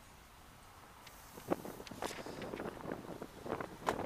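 A car's rear door shut with a single thump about a second and a half in, then footsteps and rustling handling noise on pavement, with some wind on the microphone. Before the thump it is near quiet.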